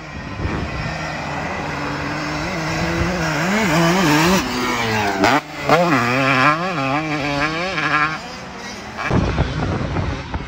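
Honda CR250 single-cylinder two-stroke motocross bike ridden on a dirt track, its engine note rising and falling again and again as the throttle opens and shuts, with a brief drop just past the halfway point. Near the end the engine gives way to a short burst of rushing noise.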